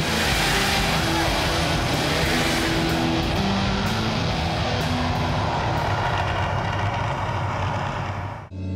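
Loud background rock music with a dense, noisy guitar-driven sound under steady held notes.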